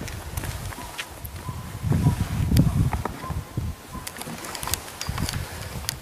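Footsteps on a gravel road and the knocks of a plastic pet carrier being carried and set down, with low rumbling handling noise loudest two to three seconds in.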